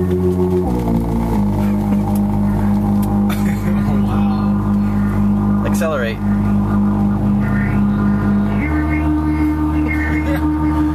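Synthesizer app on a handheld device sounding one held key as a buzzy electronic drone, its pitch and filter cutoff set by the device's tilt, which is moved by the car's steering, accelerating and braking. The pitch shifts twice in the first second and a half, holds steady, then steps up near the end.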